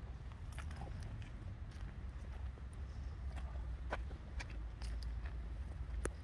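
Low wind rumble on the microphone, with scattered faint clicks and scuffs.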